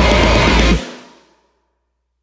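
Metalcore band with distorted guitars, bass and drums playing the song's final hit, cutting off abruptly under a second in. The last chord and cymbals ring out and die away to silence within about half a second.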